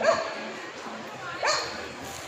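A dog barking twice, about a second and a half apart, over people talking in the background.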